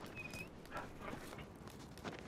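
Faint canine whimper: a short high whine near the start from a wolf being greeted by its master in a TV drama's soundtrack, heard quietly.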